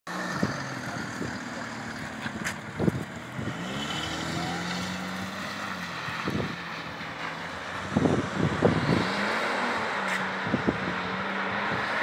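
Mercedes-Benz W210 E 300 TD estate's straight-six diesel engine held at high revs while the car drifts on wet pavement, its note mostly steady and climbing briefly a few seconds in. Sharp thumps break in now and then, a cluster of them about eight to nine seconds in.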